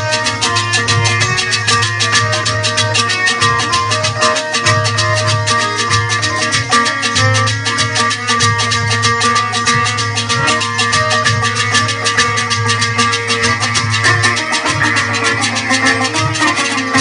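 Live Pothwari folk music played on sitar and hand drum, with a fast, steady beat.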